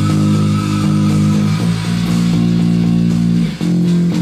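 Electric bass guitar playing long held low notes along with a power-metal band recording, changing note about every two seconds. There is a brief dip in level near the end.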